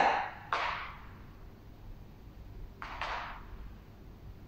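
A woman's two sharp breaths out, about two and a half seconds apart, with the effort of a Pilates ring leg lift.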